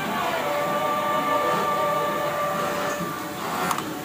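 Juki industrial overlock sewing machine running as fabric is fed through it, over music with long held notes. A single sharp click comes near the end.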